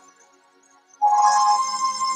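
Background worship music on a keyboard fades almost to silence, then a sustained synthesizer chord comes in suddenly about a second in and holds.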